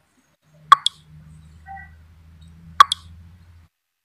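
Two sharp pops about two seconds apart, each followed at once by a smaller click, over a low steady hum that cuts off shortly before the end.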